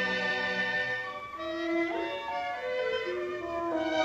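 Orchestral film score led by violins, playing held, layered notes with a quick upward glide in the middle and a downward sweep at the end.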